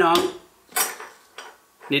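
A large ceramic plate of clams in their shells being pulled across a table: a short scrape with clinks a little before the middle, then a small click.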